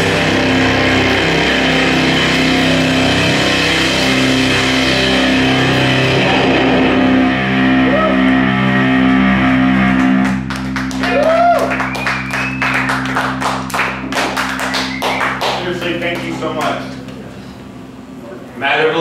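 A rock band's electric guitar and bass hold a loud final chord that rings out over the drums; about ten seconds in the music stops and the audience claps and cheers, with a few whistles, dying down near the end.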